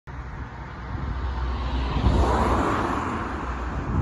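A car passing close by on the road, its tyre and engine noise swelling to a peak about two seconds in and then fading, over a steady low rumble of traffic.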